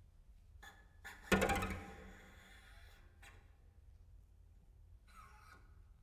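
Solo cello played with extended techniques, giving noises rather than ordinary notes: a sudden loud stuttering attack about a second in that dies away over about a second, then a short quieter sound near three seconds and a brief scrape around five seconds, with silences between.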